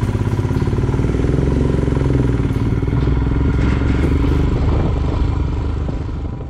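Royal Enfield Himalayan's single-cylinder engine pulling away from a standstill: it pulses at low revs for about a second, then the revs rise as the bike accelerates.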